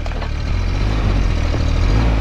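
Bobcat micro excavator's diesel engine running steadily, with a few faint clicks.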